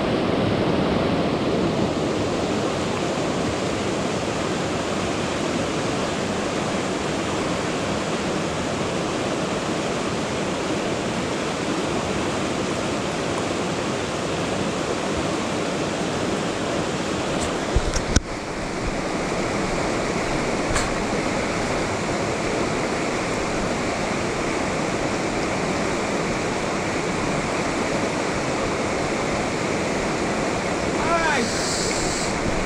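Steady rushing of fast river rapids over rocks, with a couple of brief knocks about eighteen seconds in.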